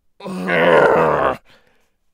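A man's acted groan of pain, about a second long, low and strained.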